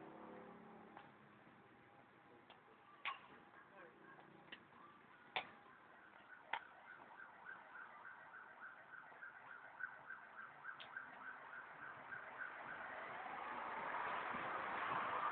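Faint street ambience with a few sharp clicks in the first half and a faint high beep repeating about three times a second through the second half. Near the end a vehicle sound begins to swell.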